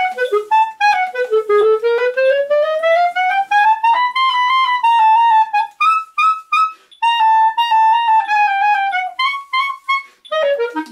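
Solo clarinet played slowly, working through a technical passage note by note. A long, even rising run of notes climbs from low to high about a second in, followed by shorter phrases with a brief gap about seven seconds in.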